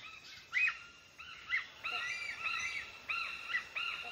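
Several forest birds chirping together: a busy run of short, high, arching notes that overlap and repeat, a few louder ones standing out.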